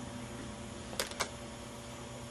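Two short, sharp clicks about a second in, a fifth of a second apart, over a quiet steady room hum.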